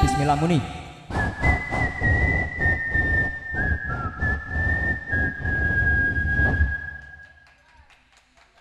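A sung line trails off with a falling glide, then a steady, high whistling tone holds for about six seconds, stepping slightly in pitch, over irregular knocks. The tone is typical of PA-system feedback ringing through the stage microphones. It fades out near the end.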